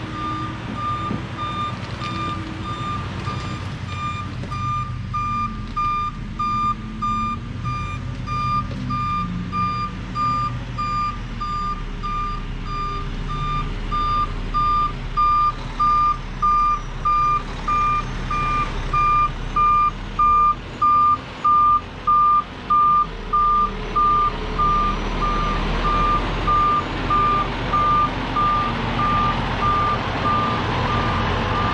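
Backup alarm of a Kenworth T-800 tri-axle dump truck beeping about once a second while the truck reverses, growing louder as it nears, over the diesel engine running at low speed.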